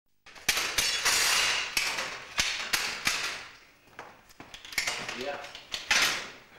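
Mechanical signal-box lever frame being worked: sharp metallic clicks and clanks of the levers and their catch handles, with a loud metallic clatter for about a second near the start and scattered knocks after it.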